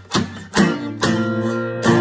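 Acoustic guitar strummed: three sharp strokes in the first second, then a chord left ringing, with the singing voice coming back in near the end.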